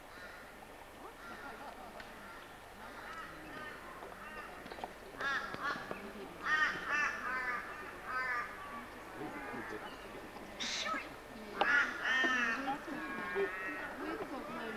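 A bird calling in runs of three or four short, arched notes, twice in the middle and again near the end, with faint voices of people chatting underneath and a single sharp click shortly before the last run.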